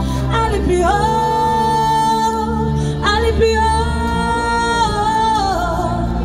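A woman singing a French pop song live into a microphone over a backing track with a steady bass, holding two long notes of about two seconds each, the second falling away near its end.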